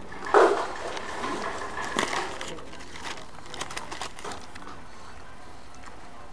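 Eating close to the microphone: a bite taken from a burger and chewed, with its paper wrapper rustling and clicking. A short loud sound comes just after the start, and a run of sharp clicks comes about three to four seconds in.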